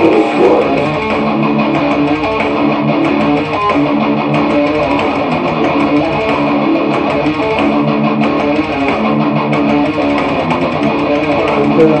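Electric guitar playing a continuous heavy metal riff.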